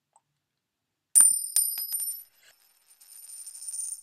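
High-pitched metallic ringing: two sharp strikes a little over a second in, about half a second apart, ring on with a few scattered ticks. Near the end a rising tinkling shimmer builds and cuts off suddenly.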